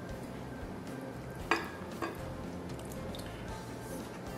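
Soft background music, with two light clinks about half a second apart near the middle, from a wire whisk and a ramekin in a glass mixing bowl as melted butter is poured into the batter.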